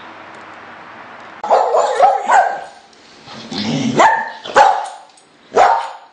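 A dog barking: several loud barks in irregular bursts, starting about a second and a half in.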